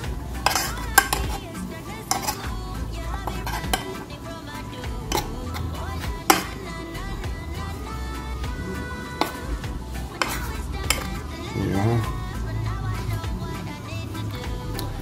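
Metal fork clinking and scraping against a glass mixing bowl as fish pieces are turned in flour, with a sharp clink every second or few, over background music.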